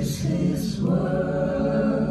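A cappella mixed vocal ensemble of men and women singing a hymn in close harmony, settling about halfway through into a long held chord.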